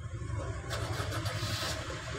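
A low, steady engine rumble, like a motor vehicle idling nearby.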